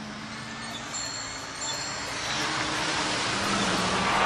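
Sound effect of road traffic: a steady hiss of noise that slowly grows louder, with faint high ringing tones over it.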